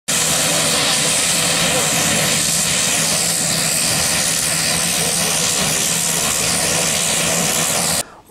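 Turboprop engines of a small high-wing propeller plane running steadily as it taxis, a constant hissing whine over a low steady hum.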